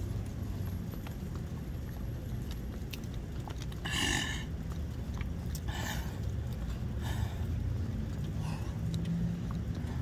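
A man breathing hard after burpees: a few short, heavy exhalations, the loudest about four seconds in and another two seconds later, then fainter ones, over a steady low rumble.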